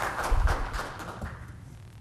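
Scattered light taps and shuffling in a large meeting hall, with a low bump under them about half a second in, dying away after about a second and a half.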